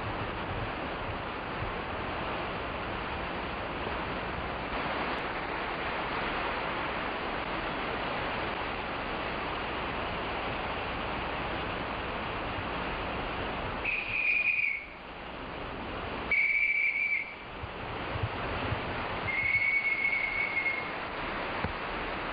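Heavy rain falling steadily, then three clear high whistled notes a few seconds apart, each on one steady pitch; the last is held longest and they are the loudest sounds.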